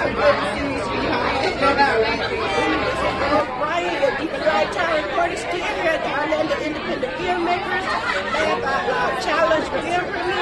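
People talking, several voices overlapping in continuous chatter.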